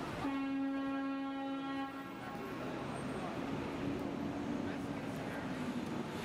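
Vehicle horn sounding one steady, unbroken blast of about two seconds near the start, over the general noise of street traffic and passers-by. A fainter tone at a similar pitch lingers for a few seconds after.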